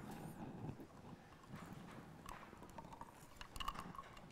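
Quiet room tone with a few faint, scattered clicks and small knocks, more of them near the end: handling noise at a wooden pulpit as a drinking glass is picked up.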